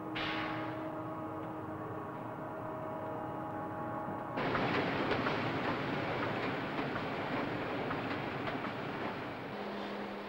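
Factory machinery: a steady hum of several held tones, then, after a sudden cut about four seconds in, the dense, even noise of a running industrial machine.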